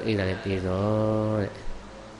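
A Buddhist monk's male voice chanting a short phrase, ending in one long steady note held for about a second, then falling quiet.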